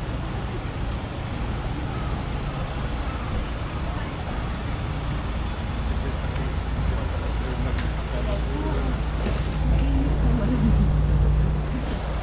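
Street ambience: steady road traffic noise with voices in the background, and a low rumble that swells louder about ten seconds in.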